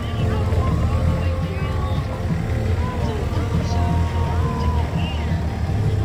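Golf cart driving over grass, a steady low rumble of motor and rolling wheels, with faint voices or music above it.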